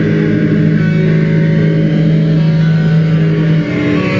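Black metal band rehearsing live: a distorted low guitar and bass note held as a steady drone, cutting off near the end.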